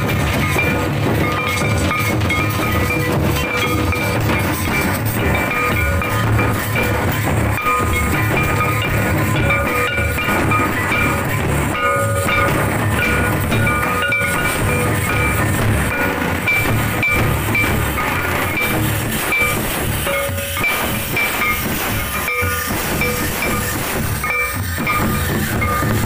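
A band of large stick-beaten drums playing a dense, driving festival rhythm for Santali line dancing, with a high-pitched melody coming and going above it.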